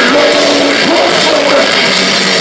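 Metal band playing live: distorted electric guitars, bass and drums, loud and continuous, heard from the crowd on the club floor.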